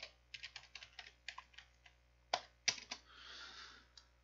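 Typing on a computer keyboard: a run of light, irregular key clicks, with two louder key presses about two and a half seconds in, followed by a brief soft rushing noise near the end.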